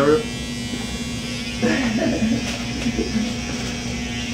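Electric hair clippers buzzing steadily while they are run over a head to shave it.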